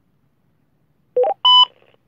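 Two-way radio signalling beeps about a second in: a quick chirp of two rising notes, then a short, steady, higher beep.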